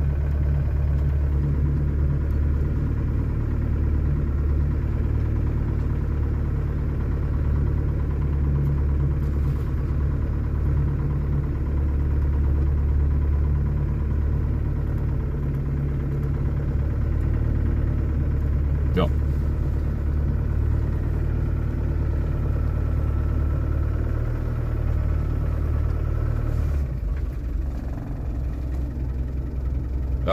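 Land Rover engine running at steady low revs in low-range gear with the differential locked, heard from inside the cab as the vehicle crawls along on its own over soft ground. A single sharp click comes about two-thirds of the way through, and the engine note drops near the end.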